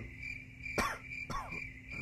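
A pause in a man's speech: a steady, faint high-pitched tone carries on in the background, and two short mouth clicks come in the middle, about half a second apart.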